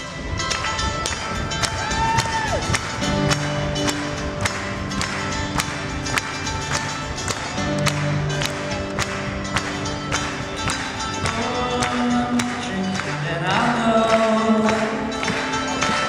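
Acoustic guitar strummed in a steady rhythm, about two chord strokes a second, playing a song's instrumental introduction.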